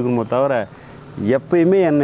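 A man talking in Tamil, with a short pause near the middle. Behind the voice, a faint, steady, high-pitched drone of crickets.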